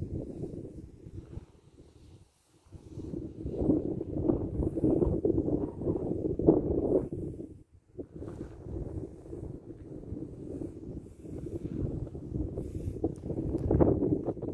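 Wind buffeting the camera's microphone in uneven gusts, a low rumble that briefly drops away about two seconds in and again near eight seconds.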